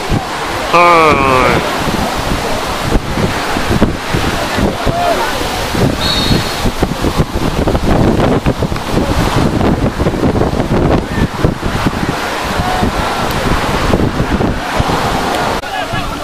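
Wind rumbling on the camera microphone, with shouts from rugby players and spectators on the pitch, including one loud call about a second in.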